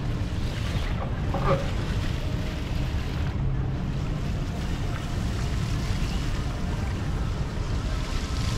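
Wind buffeting the microphone of a moving bike camera: a steady low rumble with a faint hiss over it, and a short pitched sound about a second and a half in.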